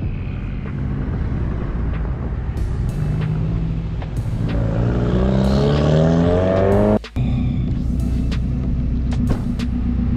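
Pickup truck engine running on the road, rising steadily in pitch as it accelerates for a few seconds, then a sudden cut to a steady low engine hum.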